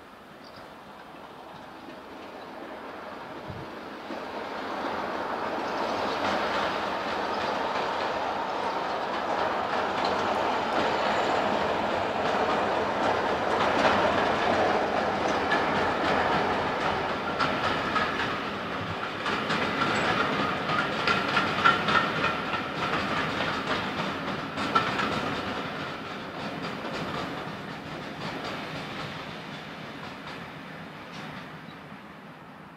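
Diesel locomotive hauling a train of passenger coaches past. The engine sound builds over the first few seconds, then the coaches' wheels clatter over the rail joints in rapid clicks, and the sound fades near the end.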